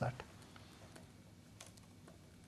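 Faint, scattered light clicks over quiet room tone, just after a man's spoken question trails off.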